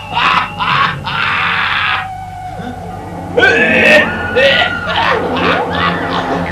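Cartoon characters screaming and crying out in a sword fight, with a burst of rushing noise about a second in that cuts off sharply, then more cries from the middle onward.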